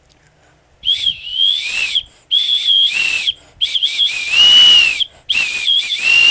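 A hand-held pigeon whistle blown in four blasts, each wavering in pitch and bending down at its end. It is a fancier's call signal to her pigeon, made to imitate the bird's own cry.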